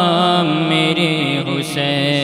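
A man's solo voice chanting an Urdu manqabat, holding long melismatic notes that bend up and down in pitch.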